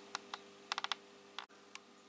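A few faint, light clicks and taps, with a quick run of four about two-thirds of a second in, from potted orchids and plastic pots being handled. A faint steady hum sits beneath them.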